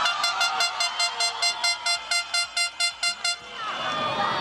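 A horn sounding in a rapid run of short toots, about five a second, stopping after about three seconds.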